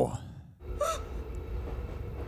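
A person's short gasp about a second in, over a low, steady rumble.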